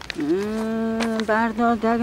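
A voice chanting a long held note. It holds steady, then wavers in pitch with brief breaks between syllables about halfway through.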